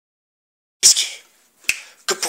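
A short, sharp hissing "tsst" a little under a second in, fading over about half a second, then a brief click near the end: a person's sibilant "sic" command urging a puppy at a rope toy.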